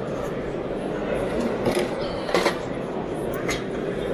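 Steady hubbub of a busy exhibition hall, with indistinct voices, and a few light knocks or clicks scattered through it.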